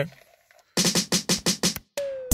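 Edited-in music: a quick run of drum hits, about eight in a second, starting a little under a second in.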